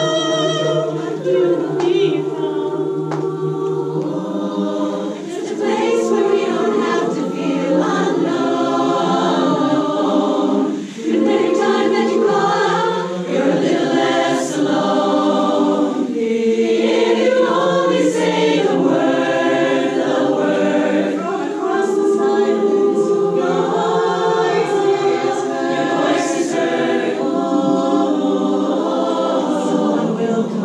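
Women's a cappella chorus singing sustained, shifting chords in harmony, with no instruments.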